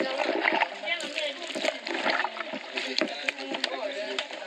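Water splashing and sloshing in short, repeated strokes as hands wash and knead food in a plastic basin, with voices talking in the background.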